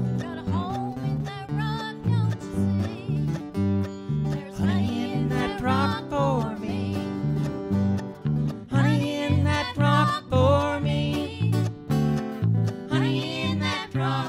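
Live bluegrass-style band music: a mandolin picked over a steady, stepping bass line, with a wavering melody line that comes and goes.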